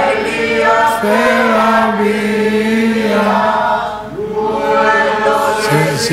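A man singing a slow hymn-like melody, drawing each syllable out into long held notes that glide between pitches.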